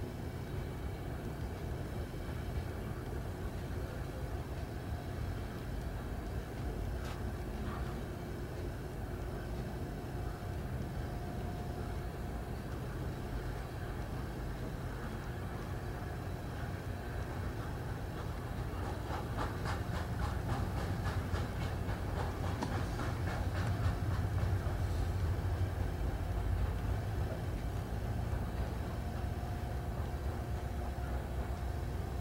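Loaded or empty coal hopper cars of a freight train rolling past with a steady low rumble. In the second half there is a run of quick, rhythmic wheel clicks, which is the loudest part.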